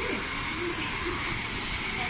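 Handheld hair dryer running steadily, blowing on long hair, with a faint steady whine above its rush of air.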